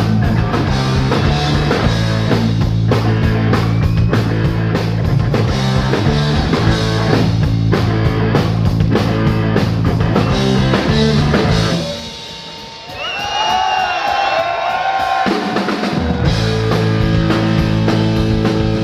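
Rock band playing loud hard rock with drums, electric guitars and bass. About twelve seconds in, the drums and bass drop out for a few seconds, leaving a quieter stretch with a single wavering high line, and then the full band comes back in.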